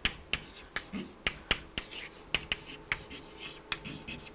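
Chalk writing on a blackboard: irregular sharp taps as the chalk strikes the board, several a second, with short scratches of the stroke between them.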